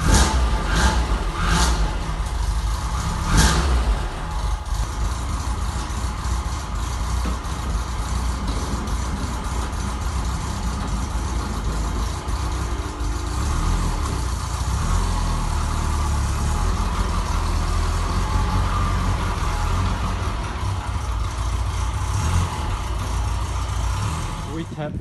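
A 1979 Opel Kadett Rallye 2.0E's fuel-injected four-cylinder engine idling steadily just after starting from a long lay-up, with a few sharp knocks in the first few seconds. The car pulls away near the end.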